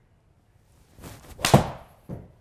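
A golfer's 7-iron swung through a golf ball: a short whoosh, then one sharp, loud strike about one and a half seconds in with a brief ring after it. The golfer calls it a slight mishit.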